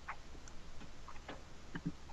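Faint, irregular clicks from someone working a computer, a few every second, over a low steady hum.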